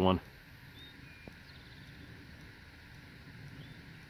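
Quiet outdoor ambience with a faint steady hiss of air and a few faint, short high bird chirps.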